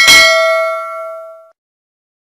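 Bell-chime sound effect for a notification-bell click: a single ding that rings with several tones and fades out about a second and a half in.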